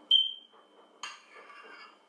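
A metal spoon clinks once against a ceramic bowl with a short ringing tone, then scrapes through soft ice cream in the bowl about a second later.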